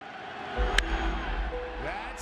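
Ballpark crowd noise from a packed stadium, with the sharp crack of a wooden baseball bat hitting the pitch just under a second in, sending a deep fly ball to center field.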